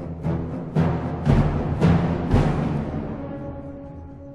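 Dramatic orchestral music: a run of loud, heavy drum hits over low held notes in the first two and a half seconds, then a sustained chord fading away.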